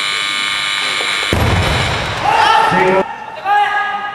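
An electronic down-signal buzzer sounds steadily for about a second, then a loaded barbell with rubber bumper plates is dropped onto the wooden lifting platform with a heavy thud. Shouting voices follow.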